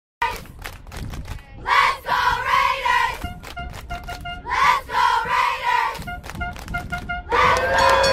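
Intro music: sharp drum hits and short repeated synth stabs, with two swells of shouting, crowd-like voices.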